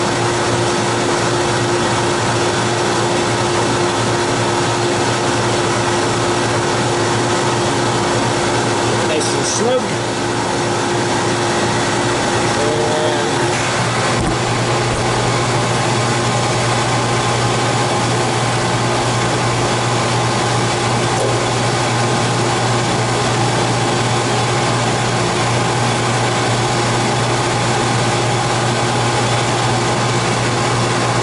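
Walk-in cooler condensing unit running, compressor and condenser fan, while it is being charged with R407F refrigerant: a loud, steady mechanical hum. About halfway through one steady tone drops out and the low hum grows stronger.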